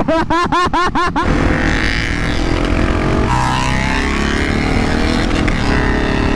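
A laugh, then a KTM motorcycle engine heard from on board, revving as the bike accelerates. It changes pitch at a gear change about three seconds in.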